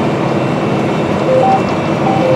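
Steady running noise inside the cab of a 346 hp John Deere R4045 self-propelled sprayer travelling across the field at about 17 mph.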